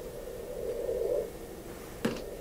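Faint hiss of a Skype call line in a pause between speakers, with a weak low hum that fades out a little over a second in.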